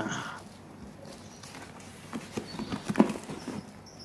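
Hands handling a cardboard box: a run of short knocks and taps in the second half, the sharpest about three seconds in.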